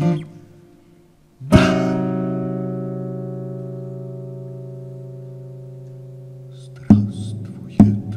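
Acoustic guitar: a single strummed chord rings out and slowly fades for about five seconds, then two more strums come near the end.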